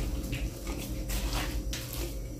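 A spatula stirring a mayonnaise-dressed chicken salad with shoestring potatoes in a glass baking dish: about five soft, wet mixing strokes in two seconds.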